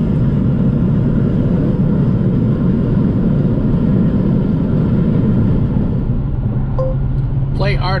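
Steady low rumble of a Dodge Challenger cruising at highway speed, heard from inside the cabin: tyre and road noise over a steady engine drone. Near the end a short electronic beep sounds, and the car's voice-command system starts to speak.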